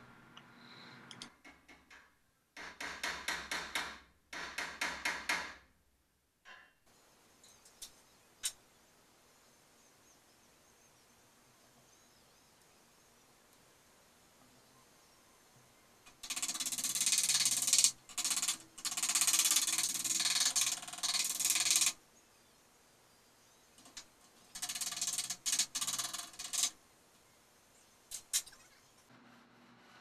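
Rapid light hammer taps against a dolly on the steel sheet metal around a Triumph TR250's headlight opening, working a sucked-in curve back out flat. The taps come in three runs of a few seconds each, with long pauses and a few single taps between.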